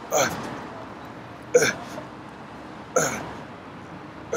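A man grunting with effort on each rep of a standing dumbbell shoulder press: three short grunts about a second and a half apart, each falling in pitch.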